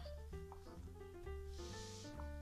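Soft background music, a run of single notes changing in pitch, with a brief rustle of a paper magazine page being unfolded near the end.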